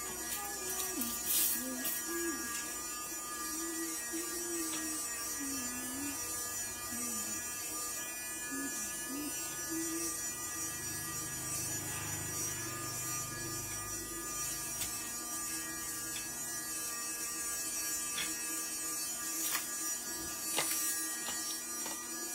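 A steady electrical buzz of several held tones in a small room, with a faint wavering tune during the first half.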